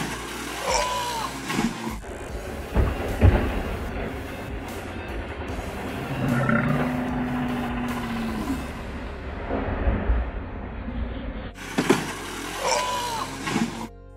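Honda CT110 postie bike riding off a low wooden ramp, its small engine under a rough, noisy phone recording with sharp knocks as it hits and comes down. The same jump sounds again near the end.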